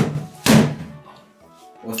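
Two boxing-glove punches thudding into a padded strike shield, about half a second apart.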